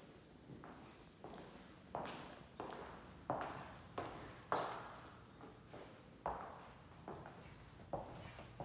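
Footsteps on a hard wood-look plank floor, about one and a half steps a second, each a sharp knock with a short echo off bare walls.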